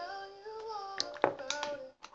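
A girl's voice singing quietly to herself, a gliding tune without words, with a few light clicks about a second in as a plastic toy horse is moved and set on the floor.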